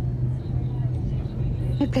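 Steady low drone of a jet airliner cabin in flight.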